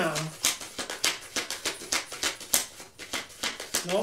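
A deck of tarot cards being shuffled by hand: a quick, irregular run of sharp card clicks and flicks.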